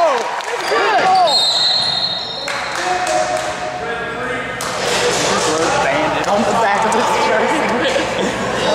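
Basketball game sounds on a hardwood gym floor: sneakers squeaking in short rising-and-falling chirps in the first second or so, with a ball bouncing and players' voices in the hall.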